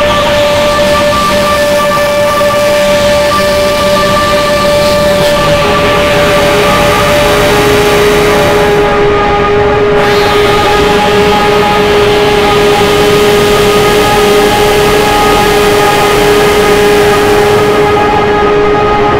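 Dark electronic drone from a live synthesizer and modular setup (Novation Peak, Soma Pipe, Soma Cosmos): sustained tones over a dense wash of noise. Partway through, a lower tone takes over from the main one.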